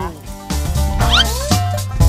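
Upbeat background music with a steady bass beat comes in about half a second in, following the last syllable of a voice. About a second in, a short, high, rising squeaky sound effect plays over the music.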